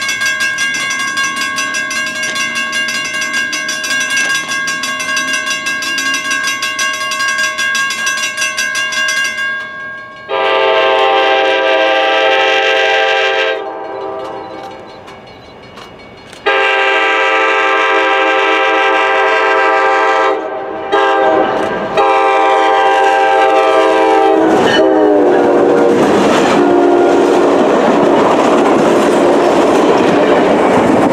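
Diesel locomotive air horn on an approaching train, sounding two long blasts, a short one and a final long one: the long-long-short-long grade-crossing signal. It grows louder as the train nears, and the rumble and clatter of wheels on rail builds under the last blast. A steadier horn chord sounds for the first nine seconds or so.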